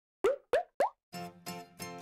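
Three quick popping sound effects about a quarter second apart, each a short upward sweep in pitch. About a second in, music starts with three repeated chords.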